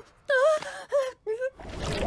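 A woman's voice making three short, high, moaning vocal sounds in quick succession.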